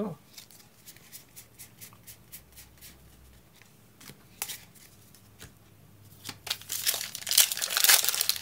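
Trading cards being laid down on a play mat with scattered light clicks and taps, then, from about six seconds in, a foil booster pack wrapper crinkling and tearing as it is opened. The tearing is the loudest part, near the end.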